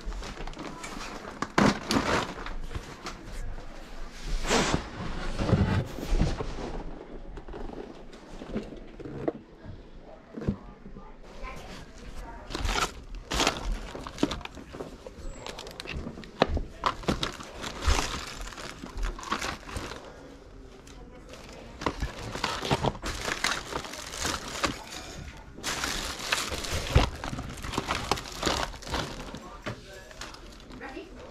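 Household items being handled and rummaged through, giving scattered clicks, knocks and rustling, with indistinct voices in the background.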